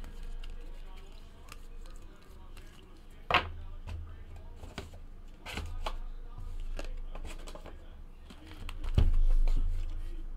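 Hands handling trading cards, plastic card holders and a cardboard card box on a table: light rustles and clicks, a sharp knock a little over three seconds in, and a louder low rumble of handling near the end as the box is picked up.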